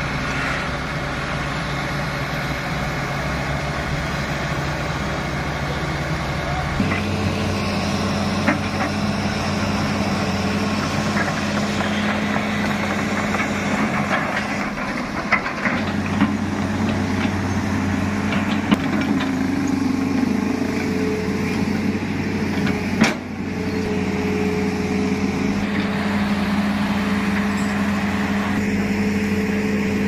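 Heavy diesel engines of an excavator and a loaded dump truck running steadily at close range. The engine note changes abruptly about seven seconds in, and a few sharp knocks come in the middle. The sound dips briefly after twenty-three seconds.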